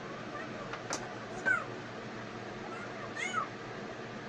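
Two faint, short animal calls, each falling in pitch, about a second and a half and three seconds in, over a steady hiss, with a light click about a second in.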